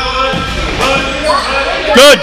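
A basketball being dribbled on a gym floor, among the overlapping shouts and voices of players and spectators.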